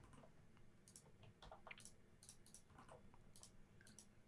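Near silence with a scattering of faint computer mouse and keyboard clicks.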